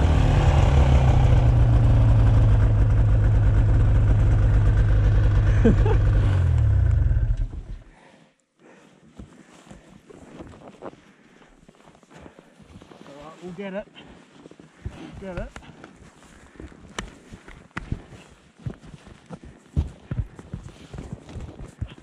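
Arctic Cat 570 snowmobile's two-stroke engine held at high throttle for about seven seconds, trying to drive the sled out of deep snow where it is bogged. The revs then fall and the engine sound drops away sharply about eight seconds in, leaving faint rustling, clicks and quiet voices.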